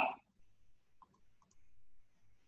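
A few faint, scattered clicks of a computer mouse as the on-screen document is scrolled.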